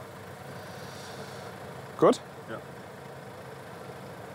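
A car engine idling steadily and low in the background.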